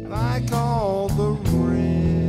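Live band playing a slow country ballad: a lead melody line sliding and bending in pitch over held chords from guitar, bass and keyboard, with steady, light drum-kit strokes about every half second.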